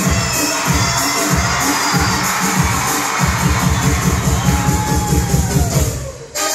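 Loud dance music with a heavy, driving bass beat, with a crowd cheering and shouting over it.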